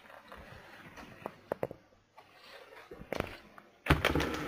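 Hot water poured from an electric kettle into a stainless steel stockpot of sugar syrup, with a spoon stirring and clicking sharply against the pot several times.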